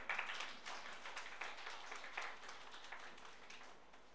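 Applause: a run of hand claps, loudest at the start and dying away shortly before the end.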